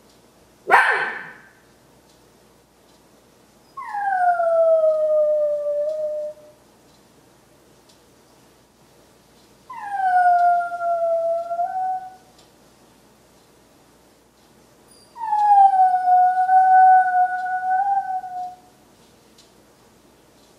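A dog howling three times, each long howl starting higher, sliding down and then holding steady, the last one longest. One short, sharp, loud sound comes about a second in, before the first howl.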